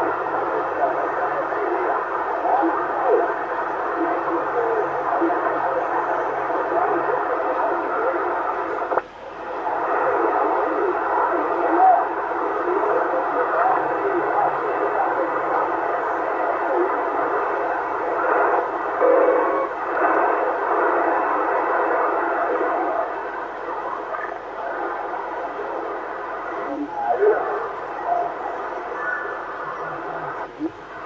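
Yaesu FT-450 transceiver's speaker output on the 27 MHz CB band in upper sideband: steady band noise with faint, garbled distant voices coming through it. The noise drops out for a moment about nine seconds in.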